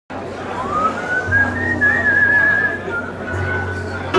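A person whistling one long note that slides up at first, wavers at the top, then dips and holds a little lower, over a low hum.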